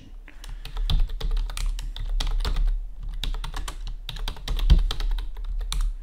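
Typing on a computer keyboard: a quick, uneven run of keystrokes with short pauses, over a low steady hum.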